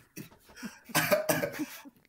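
Men laughing in short, breathy bursts, with little voice in it.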